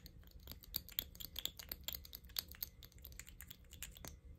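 Fingernails clicking and tapping on a mini lip gloss tube, quick irregular clicks several times a second.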